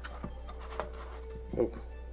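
A few faint clicks of plastic parts being handled on a Snoopy snow cone machine, over a steady low hum and a faint held tone.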